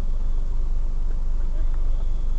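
Car engine idling while stopped, heard from inside the cabin as a steady low rumble.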